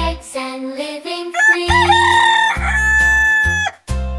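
A rooster crowing, cock-a-doodle-doo, about a second and a half in, over a children's song's instrumental backing. A long held note with bass follows and cuts off just before the end.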